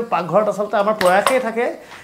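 A man talking, with two sharp metallic clinks of kitchen utensils against cookware about a second in.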